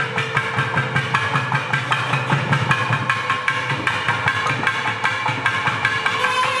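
Periya melam temple music: two thavil barrel drums playing fast, dense strokes under a steady held note from the nadaswaram double-reed pipes.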